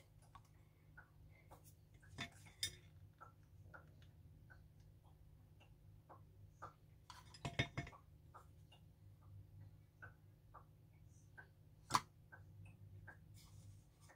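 Faint, scattered small clicks and taps of hands handling small craft pieces on a table, with a short cluster of louder taps about halfway through and one sharp click near the end, over a low steady room hum.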